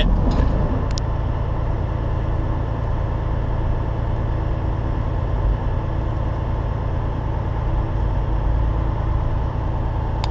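Peterbilt semi truck's diesel engine running, heard from inside the cab as a steady low drone with road and cab noise. A single short click about a second in.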